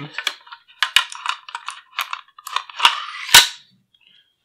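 Steel bolt carrier group of an HK SP5 pistol being slid into its stamped sheet-metal receiver: a run of metallic clicks and scrapes, with sharper clacks about a second in and near the end, the loudest just before it stops.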